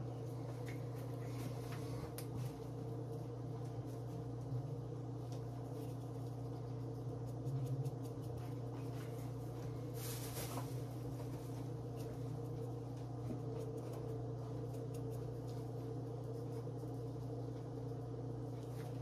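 Steady electrical hum of a kitchen appliance motor, with a few faint light clicks and a brief soft hiss about ten seconds in.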